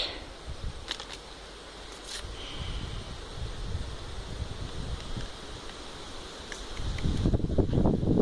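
Wind noise on the microphone, a steady low rumble with a few faint clicks early on, growing louder near the end.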